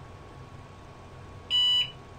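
A single short beep, about a third of a second long, from the IBM PS/2 Model 30's internal PC speaker, about one and a half seconds in. It is the power-on self-test beep as the machine restarts, and one short beep means the self-test passed.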